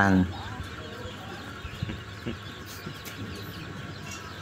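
A spoken word at the very start, then a quiet background with a few faint, short animal calls.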